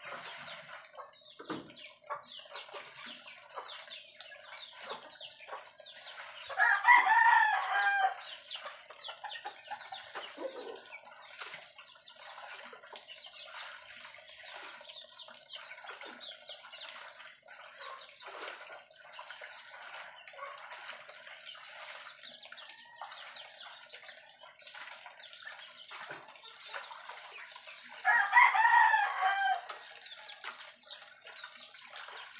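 A rooster crows twice, once about seven seconds in and again near the end. Between the crows, soft splashing and sloshing of clothes being hand-washed in a basin of soapy water.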